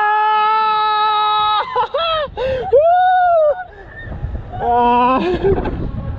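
People screaming on a thrill ride: one long held scream for about a second and a half, then shorter rising-and-falling cries, and a lower-pitched yell near the end.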